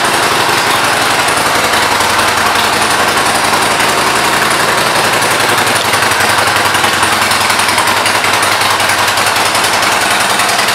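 Harley-Davidson Sportster 1200 Custom's air-cooled Evolution V-twin running steadily at idle, a loud, rapid, even pulse of exhaust beats.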